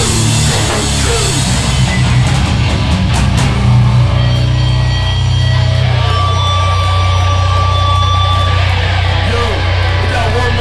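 Live hardcore band playing loud, distorted electric guitars, bass and drums. Cymbals and drums crash for about the first two seconds. Then the drums drop out and the guitars and bass ring on, holding long notes.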